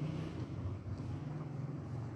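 A steady low background hum with a faint even hiss, with no babbling.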